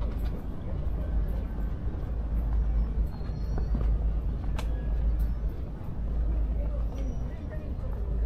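Outdoor city ambience: a steady low rumble of traffic, with faint distant voices toward the end and a single sharp click about halfway through.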